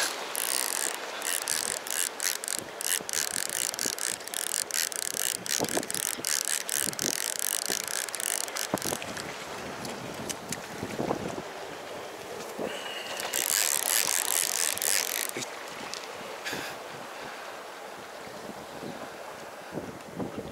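Spinning reel being cranked to retrieve line, its gearing clicking rapidly and steadily for about the first half, with a short hissing rush a little later. Waves wash against the rocks and wind buffets the microphone throughout.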